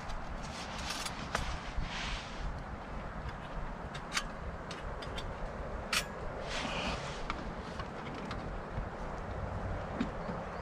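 Small camp kit being handled while a folding wood-burning stove is lit: scattered light clicks and taps and a couple of short rustles or scrapes, over a steady low rumble in the background.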